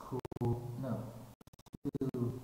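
A man's voice with no clear words, broken by crackling static from a faulty microphone. In the second half the sound cuts in and out rapidly with scratchy crackles.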